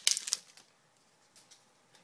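Hockey card pack wrapper crinkling as it is torn open, a short burst of crackling in the first half second, then near quiet with one faint tap.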